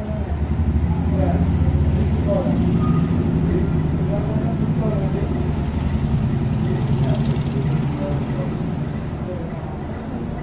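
A motor vehicle engine rumbling steadily, strongest in the first few seconds and easing toward the end, with faint voices in the background.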